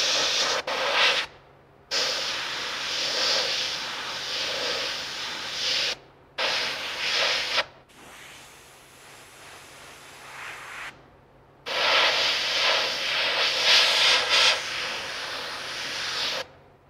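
Airbrush spraying in long hissing passes that start and stop sharply: brief breaks come about one and a half, six and eleven seconds in, with a softer, lighter spray between about eight and eleven seconds and the loudest spray in the last few seconds.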